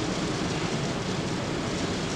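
Steady, even hiss of room noise in a large hall, with no other event.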